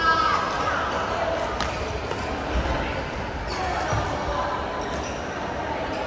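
Busy badminton hall: a few sharp racket-on-shuttlecock hits, one to two seconds apart, over echoing voices and general chatter.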